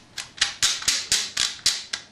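Remington 870 shotgun's magazine cap being screwed onto the magazine tube by hand, its detent clicking in a quick, even run of about five clicks a second.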